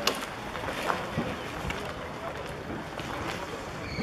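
Outdoor crowd ambience: indistinct background voices under wind on the microphone, with a few scattered clicks.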